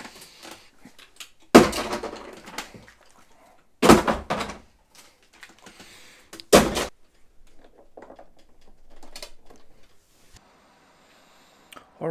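Plastic water bottles knocking and thudding as they are handled and tossed about: three loud hollow thunks a couple of seconds apart, with lighter knocks and rustling between them.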